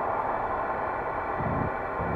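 Live electronic music from a Eurorack modular synthesizer: a dense, sustained synth drone, with a low bass hit about a second and a half in.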